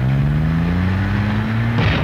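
A vehicle engine accelerating, its pitch rising steadily for nearly two seconds before cutting off abruptly near the end.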